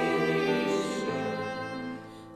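Church choir singing a hymn with accompaniment, holding long sustained notes at the end of a line that fade away near the end.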